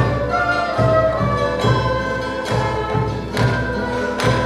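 Live Andean folk music: several quenas (Andean notched flutes) play a melody of long held notes together over strummed guitar, with a drum beat landing a little faster than once a second.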